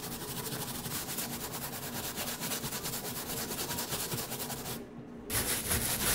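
Wet scrub brush scrubbing the white sole of a sneaker with foaming shoe cleaner, in rapid back-and-forth scratchy strokes. The scrubbing breaks off briefly about five seconds in, then resumes.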